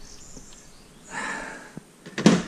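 Brief rustle of handling noise about a second in, as a hand and tool move, over quiet room tone, with one faint click near the end.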